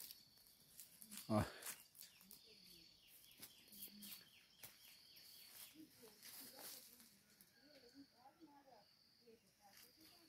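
Near silence outdoors: a faint rural background with faint chirping bird calls, mostly in the later part, and a few soft clicks.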